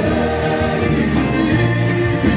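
Live performance of a Greek song: a male lead singer sings over a band of drums, bass, guitars and violin, with a steady bass line underneath.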